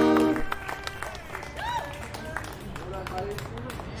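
Acoustic guitar's final chord ringing and dying away within the first half second, then a quieter street background with faint distant voices and a few small clicks.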